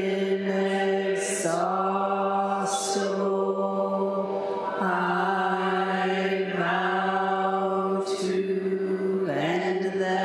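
Buddhist chanting: a voice sustained on one steady pitch, almost monotone, with slight dips in pitch every second or two where the phrases turn and brief breaths or hissed syllables between them.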